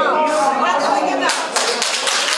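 Several people clapping, breaking out a little past halfway and going on, over people talking.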